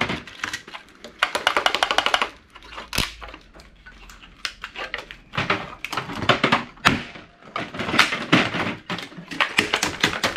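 Clicking and rattling of a VCR's circuit boards and plastic parts being pried apart and handled by gloved hands. A fast run of clicks comes about a second in, a single sharp snap near three seconds, then bursts of clicks through the second half.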